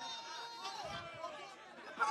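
Faint chatter of a gathered crowd, several voices talking quietly at once.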